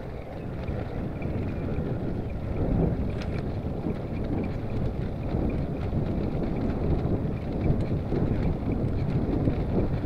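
Wind buffeting the microphone of a handlebar-mounted camera on a moving bicycle: a steady low rumble with no let-up.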